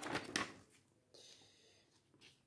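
Paper pages of an instruction booklet being turned by hand: a quick crisp rustle in the first half second, then a softer sliding rustle about a second later.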